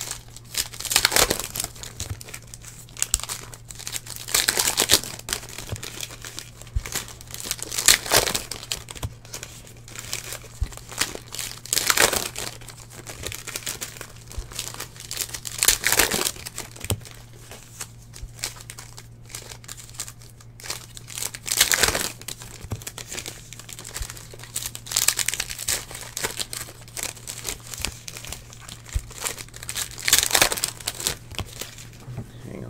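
Foil trading-card pack wrappers being torn open and crinkled by hand, rustling in loud bursts every few seconds.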